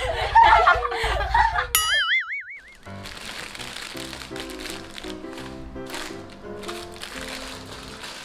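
Several women laughing together over a low music bed, cut off by a short wobbling 'boing' sound effect. After a brief gap, quieter background music with steady notes plays.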